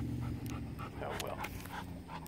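Bernese Mountain Dog panting with its mouth open, quick breaths about four a second.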